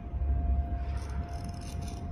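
Steady machine hum, a single mid-pitched tone, with a low rumble in the first second or so and a few faint clicks near the end.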